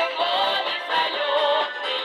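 Women singing a Russian folk song with wavering, vibrato-laden held notes, accompanied by accordion and strummed balalaika.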